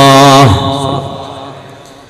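A man's voice chanting through a microphone, holding one long steady note that ends about half a second in, followed by a reverberant tail that fades away over the next second and a half.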